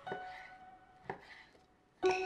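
Chef's knife slicing through raw pork tenderloin and knocking on a wooden cutting board: two cuts about a second apart.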